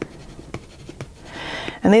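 Water-soluble graphite pencil scratching short marks onto brown kraft paper in a series of quick strokes, with a louder scratch near the end.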